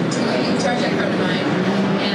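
A woman talking into a handheld microphone, over the steady din of a crowded exhibition hall.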